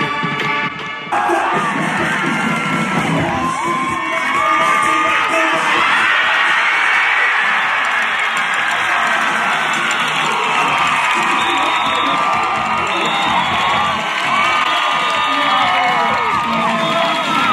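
Recorded music cuts off about a second in, giving way to a large crowd of students cheering, shouting and whooping without a break.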